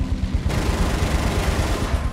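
Film sound of a Spitfire's machine guns firing a burst of about a second and a half over the fighter's rapid, pulsing engine rumble. The burst starts suddenly about half a second in and stops just before the end.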